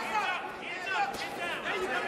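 Men's voices calling out in short bursts over background chatter from the arena.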